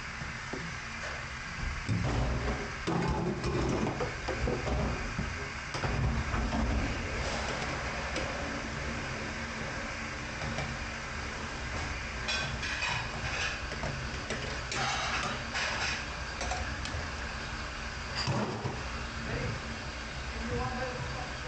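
Stainless steel pots being scrubbed by hand in a sink of soapy water: the water sloshes and the metal knocks, loudest in the first several seconds, with stretches of pad-on-metal scrubbing later on. A steady low hum runs underneath.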